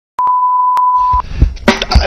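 Steady single-pitch electronic test-tone beep lasting about a second, with a few clicks over it, then music cuts in just over a second in with drum hits.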